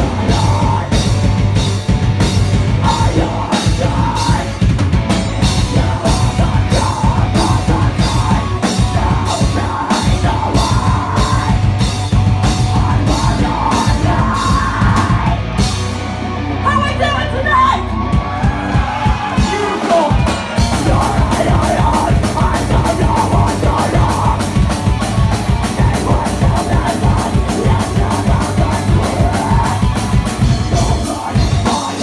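A live heavy metal band playing loud: drums, distorted guitar and bass, with vocals into the microphone. About 16 s in the drums drop out for a few seconds, leaving a held low bass note under a wavering guitar or vocal line. Around 20 seconds in the full band crashes back in with heavy cymbals.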